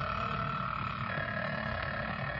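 Telephone bell ringing in one long, steady ring, a sound effect in an old-time radio drama.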